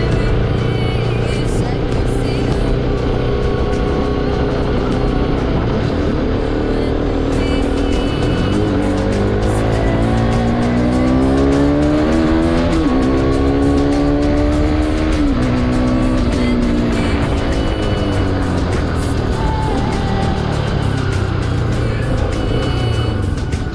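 Bajaj Pulsar 200 motorcycle's single-cylinder engine under way, its note rising steadily as it accelerates, dropping sharply at a gear change about halfway through, then falling away as the bike slows.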